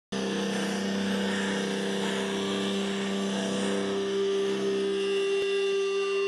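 Amplified, distorted electric guitar of a live rock band holding a sustained droning chord through the PA. The lower note fades out about halfway through while the upper note keeps ringing.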